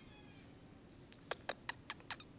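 A newborn baby's faint, thin, high-pitched squeak, fading out about half a second in. Near the end comes a quick run of about five soft clicks.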